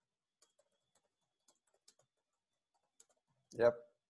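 Near silence with four faint, scattered clicks.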